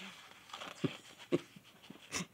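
A woman's quiet, breathy laughter: a few short soft puffs about half a second apart, without words.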